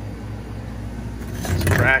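Steady low hum of running commercial refrigeration equipment, with a brief burst of handling noise near the end.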